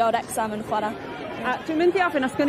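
Speech only: a girl talking into a handheld microphone, with other voices chattering around her.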